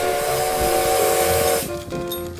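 Steam locomotive whistle sounding a steady chord over a loud hiss of escaping steam, cutting off suddenly near the end.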